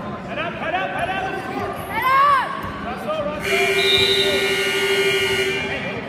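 Gym scoreboard buzzer sounding one steady tone for a little over two seconds, starting about halfway through, as the wrestling period's clock runs out to zero. Spectators' shouts come before it.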